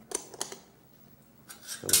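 Two light clicks of a metal spoon against a stainless pan, then another shortly before speech resumes.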